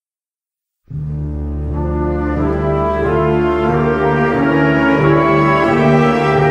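Concert band music starting about a second in after a short silence: slow, sustained low chords that swell gradually.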